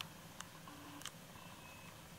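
Very quiet room tone: a faint steady low hum with two faint clicks, about half a second apart, in the first second.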